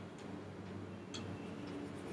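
A few faint, irregularly spaced clicks of a computer mouse over a low steady room hum.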